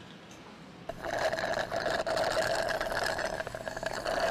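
Water glugging in a small plastic water bottle as it is drunk from, with air bubbling back in as a rapid, steady gurgle that lasts about three seconds. It is preceded by a faint click of the cap just before it starts.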